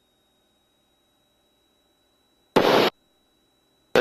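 Near silence with a faint steady high tone, broken about two and a half seconds in by one short, loud burst of static-like noise lasting about a third of a second. A man's voice starts right at the end. The engine is not heard, which suggests a feed from the aircraft's intercom that cuts out when no one speaks.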